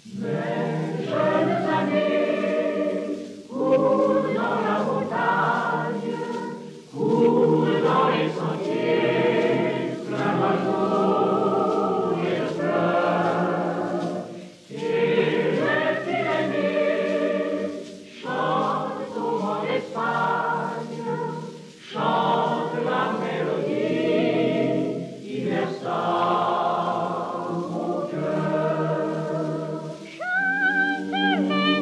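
Choir singing: a male vocal ensemble with a boys' choir in sustained phrases, with short breaks between phrases every few seconds.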